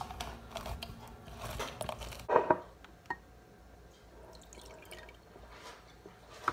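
A lemon half pressed and twisted on a plastic hand juicer: wet squishing with plastic clicks and knocks, the loudest clatter a little over two seconds in.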